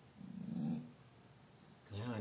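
A dog's short, low growl, just under a second long, about a quarter second in.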